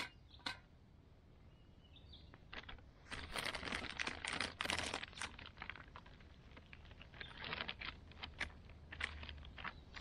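Paper wrapping rustling and crinkling as a burger in a flatbread is handled and folded on it, in two spells: one about three seconds in and another near the end.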